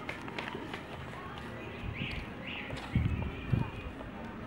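Young children's voices, two short high-pitched calls, then a couple of loud low thumps near the end.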